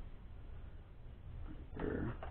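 Low, steady hum in a quiet room, with a click and a short burst of sound near the end.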